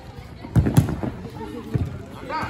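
A football being kicked on artificial turf: two sharp thuds about a quarter of a second apart, about half a second in, and a weaker one near the end, with players' voices behind.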